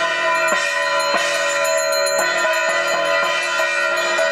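Loud ringing of temple bells together with music, with repeated strokes at irregular intervals, during the puja offering.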